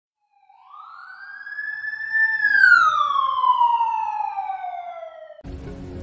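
A single siren wail: it rises, holds briefly, then falls slowly, and cuts off suddenly near the end.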